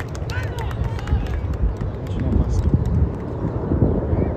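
Short shouts from voices across an outdoor soccer field during play, over a steady low rumble.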